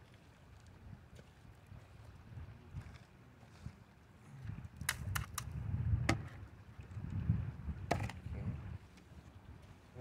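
Green plastic gold pan being handled and set down into a plastic classifier on gravel: several sharp plastic knocks between about five and eight seconds in, over a low rumble.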